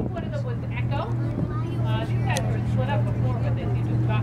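Steady low drone of a boat's engine, with people talking over it.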